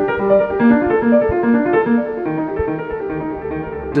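Piano playing an evenly paced, repeating run of broken-chord notes, about four strokes a second in the middle voice with higher notes in between, with a lower bass note coming in a little past halfway.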